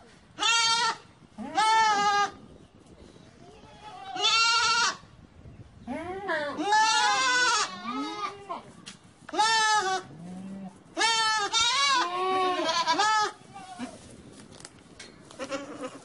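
Several goats bleating, about a dozen wavering calls under a second each, some higher-pitched and some lower, a few overlapping in the middle.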